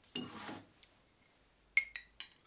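A tulip-shaped whisky nosing glass handled on a wooden tabletop: a light knock with a short scrape just after the start, then a sharp, ringing clink of glass near the end.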